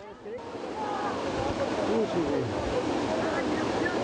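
Steady rushing noise of a fast flood torrent, setting in about half a second in, with faint distant voices shouting over it.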